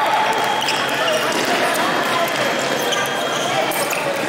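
Busy fencing-hall ambience: voices and shouts from fencers and spectators echoing in a large hall, with a steady high electronic tone running underneath and scattered footwork knocks on the piste.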